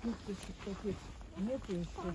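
Indistinct talking voices in short phrases over a low, steady rumble.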